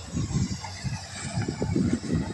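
Irregular low rumble on the microphone of a handheld camera being carried and panned across the field.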